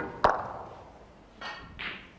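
Snooker cue tip striking the cue ball, then a sharp click of the cue ball hitting a red about a quarter second later. Near the end come two softer knocks as the red, struck with too much pace, rattles in the jaws of the pocket and stays out.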